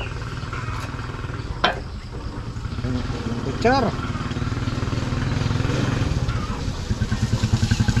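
Motorcycle engine running with a low, evenly pulsing note that grows louder near the end.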